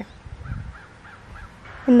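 A few faint, short bird calls, spaced apart, with a brief low rumble about half a second in.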